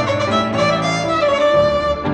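Instrumental background music, a violin playing a melody over a lower accompaniment.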